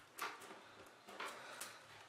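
Faint, brief rustles and light scrapes of hands pressing a thin wooden kite spar onto a tissue-paper sail and fastening its end with tape. There are a couple of strokes, one just after the start and another a little after a second in.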